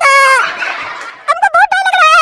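High-pitched, sped-up cartoon character voice babbling in rapid warbling syllables. A drawn-out note drops in pitch near the start and gives way to a breathy hiss, then the fast warbling resumes.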